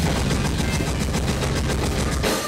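Live rock band playing a loud, noisy build-up: a fast run of repeated drum hits, about ten a second, over a held low bass note.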